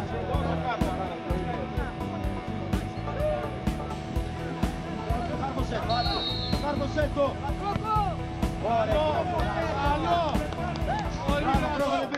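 Men's voices calling around a football pitch over steady background music, with one short, high referee's whistle blast about halfway through.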